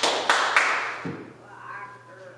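Two sharp hand claps about a quarter second apart, each leaving a short ring in the room, then fading.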